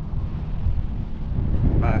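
Strong wind buffeting the action camera's microphone, a steady low rumble.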